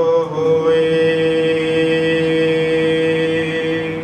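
Chanted Sikh scripture recitation by a male voice: the closing phrase of a line glides off in the first moment, then a single steady note is held for about three seconds and cut off near the end.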